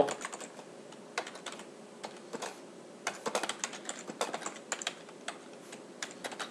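Computer keyboard typing: scattered keystrokes at first, then a quicker run of keys from about three seconds in.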